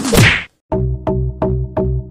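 An edited whoosh-and-whack transition sound effect with a falling pitch, then a short silence, then an electronic music beat with sharp clicks about three times a second.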